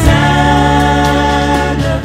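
Nigerian gospel worship music holding one steady chord over a low bass, moving to a new chord at the very end.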